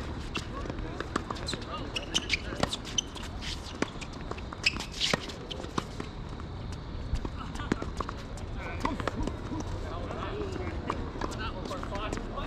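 Tennis rally on an outdoor hard court: a quick series of sharp knocks of racket strings hitting the ball and the ball bouncing, with a scuff of shoes about five seconds in. After about six seconds the knocks stop and faint voices are left.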